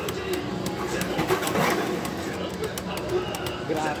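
Two Beyblade Burst spinning tops spinning against each other in a clear plastic stadium, with a string of short, irregular clicks as they knock together. Voices talk faintly underneath.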